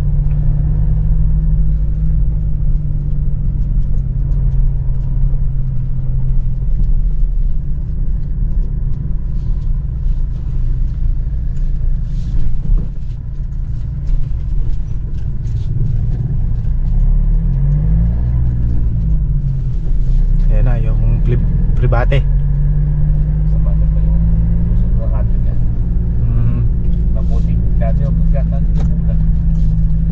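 Car engine and road noise heard from inside the cabin, a steady low rumble at low speed. The engine note eases as the car slows to a crawl about halfway through, then rises as it speeds up again.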